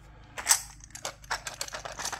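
Silver rounds clicking against each other and the plastic coin tube as they slide out into a hand: a run of light, irregular clicks, the loudest about half a second in.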